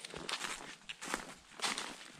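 Footsteps of a hiker walking on a trail, about two steps a second.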